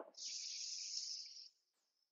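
A woman's deep inhale: a steady, breathy hiss of air drawn in for about a second and a half.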